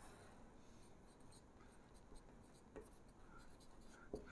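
Near silence with faint marker-pen strokes writing on a whiteboard.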